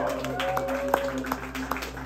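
Scattered hand claps from a small audience over a steady low hum from the stage amplification, with a held tone fading out about halfway through.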